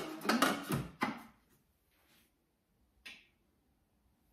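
Plastic lid of a Thermomix TM6 being fitted onto its steel mixing bowl, clattering and scraping with a low knock through the first second. A single short click follows about three seconds in.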